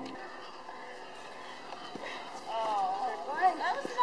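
Faint steady outdoor background noise, then a distant voice starting to talk about two and a half seconds in.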